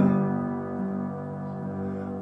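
Upright piano chord struck and left to ring, fading over about a second and then sustaining softly.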